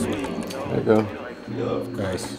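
Short, indistinct bits of a man's talk after the beat has stopped.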